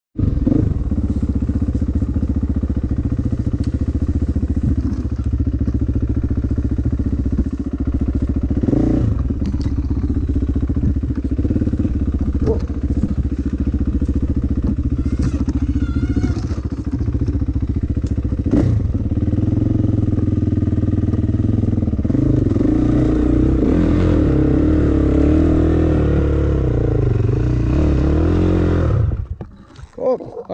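Gas Gas dirt bike engine running at low speed with blips of throttle and a few knocks from the bike, revving harder and wavering in the last several seconds. It then cuts out abruptly just before the end when the rider accidentally leans on the kill switch.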